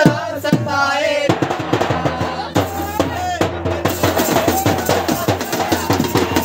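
Band baja drums, a big bass drum and smaller drums beaten with sticks, playing a fast, dense rhythm that thickens after about a second. A man's voice shouts or sings over the drums at the start.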